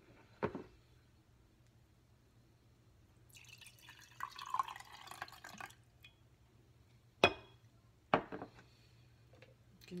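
Freshly squeezed lemon juice poured from a glass jar into a drinking glass, a splashing pour lasting about two and a half seconds. Then two sharp knocks, a second apart, as the plastic juicer is handled over the glass.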